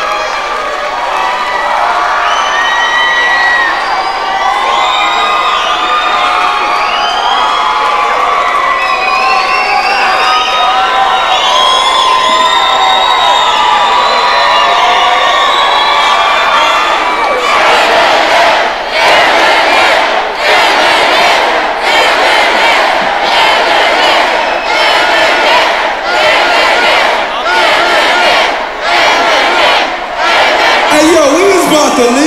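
Large concert crowd cheering and screaming, with many high shrieks and whoops. After about 17 seconds the noise turns rhythmic, surging about once a second.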